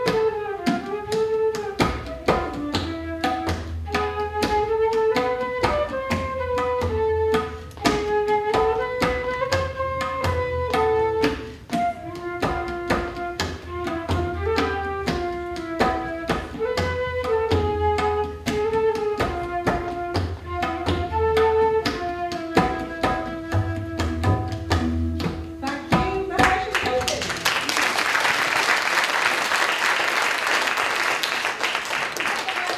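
Flute and tabla duet: a flowing flute melody over quick tabla strokes, with deep bass-drum tones coming and going. The music stops about 26 seconds in and audience applause follows.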